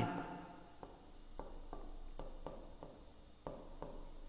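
Stylus writing on an interactive display board's screen: faint, light taps and strokes, about two a second, as each letter is drawn.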